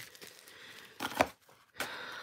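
Soft handling of small plastic packages: a brief rustle about a second in, then a low, steady crinkle of plastic starting near the end.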